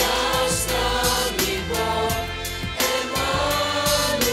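A youth choir singing long held notes over an accompaniment with a steady beat.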